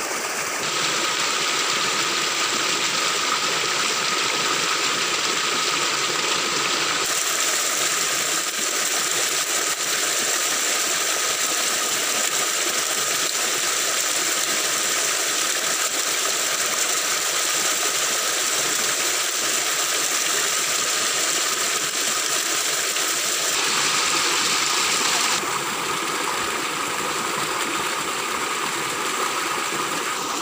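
Stream water rushing over rocks: a loud, steady hiss whose tone shifts abruptly a few times.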